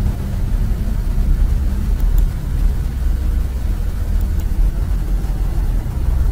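Loud, steady low rumble with an even hiss over it.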